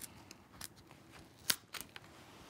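A paper envelope being opened and a card slid out: faint paper rustling with a few crisp clicks, the sharpest about one and a half seconds in.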